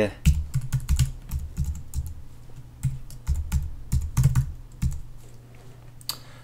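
Typing on a computer keyboard: a quick, irregular run of key clicks with soft low thumps, thinning out near the end.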